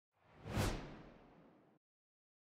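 A whoosh sound effect marking an animated slide transition: one swell of noise that builds quickly, peaks about half a second in, and fades away over about a second.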